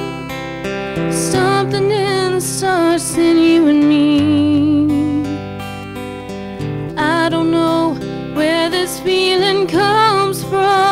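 A young woman singing a slow, quiet song live into a microphone, holding long notes with a wavering vibrato over a steady instrumental accompaniment.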